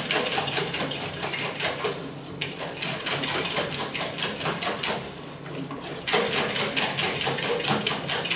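Wire balloon whisk beaten fast around a stainless steel bowl, a rapid, even rattle of metal clicking and scraping against metal as it whisks a yellow egg mixture. This is the whitening stage of whisking the eggs, beaten until pale.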